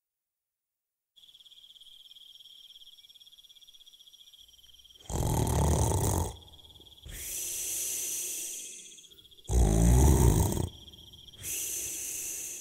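A man snoring, as a cartoon sound effect: two snores, each a loud intake of breath followed by a long hissing exhale. Under them runs a steady high cricket trill that starts about a second in.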